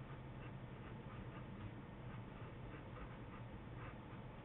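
Faint scratching of a pen writing on paper, a few short strokes a second, over a low steady hum.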